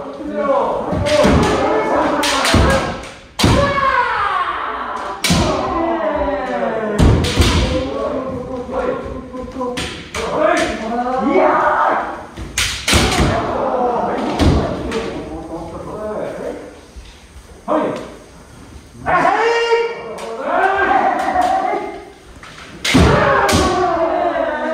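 Kendo sparring: fencers giving long, drawn-out kiai shouts, punctuated by sharp strikes of bamboo shinai and thumps of stamping feet on the wooden dojo floor.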